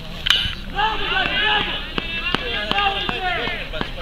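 Several voices shouting and calling over one another across an open football pitch, with a few sharp knocks, the loudest about a third of a second in.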